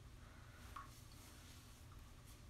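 Near silence: room tone, with one faint short sound a little under a second in.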